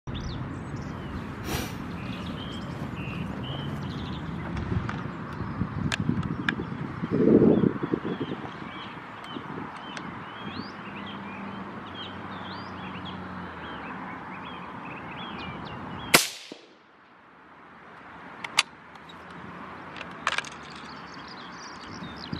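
A single rifle shot from a CZ527 chambered in .17 Hornet, a sharp crack about sixteen seconds in, against a background of birdsong. It is the shot that drops the rabbit.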